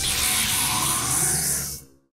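Rain hiss from a storm sound effect, mixed with soft background music, fading out to silence just before the end.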